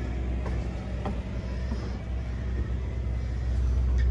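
Steady low machine hum with a few faint clicks, likely footsteps on metal entry steps.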